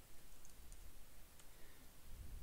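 Faint clicks of a computer keyboard as a few keys are typed, spread unevenly through the moment.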